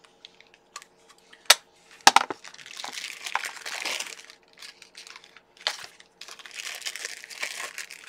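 A clear plastic toy capsule clicking open with a couple of sharp snaps, then a thin clear plastic bag crinkling in two stretches as it is handled and opened.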